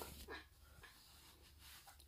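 Near silence, with a few faint, brief handling rustles from the phone being moved in the first half.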